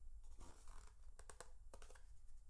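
Faint rustling of a printed paper guide being handled and turned over, with a quick cluster of light clicks and taps in the second half.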